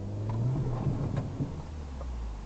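Car engine revving up as the car accelerates from a crawl, a low drone that grows louder and rises slightly in pitch, with a few sharp ticks around the middle.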